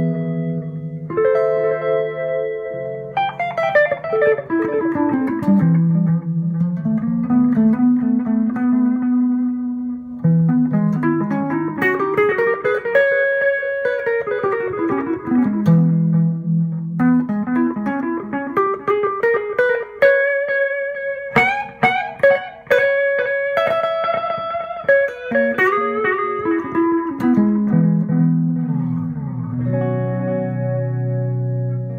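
Electric guitar (a PRS SE Custom into a Carvin Legacy 3 amp) played through the Line 6 M5 Stompbox Modeler's digital delay with modulation: melodic runs falling and rising between held chords, the notes trailed by echoes with a chorus-like shimmer, a warm effect. A few sharp strums come a little past the middle.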